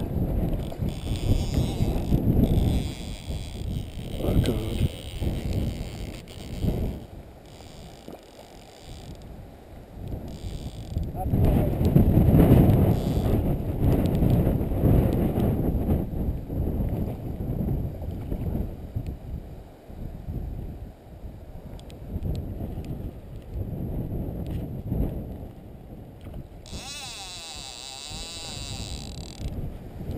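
Wind buffeting the microphone over a flowing river, an uneven rumbling noise that swells and fades. A high-pitched sound comes and goes during the first few seconds and again near the end.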